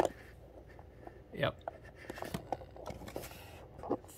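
Small die-cast toy car being handled on a cardboard box: a sharp tap at the start, then a few faint clicks and ticks as its articulated lowrider suspension is worked into a three-wheel stance.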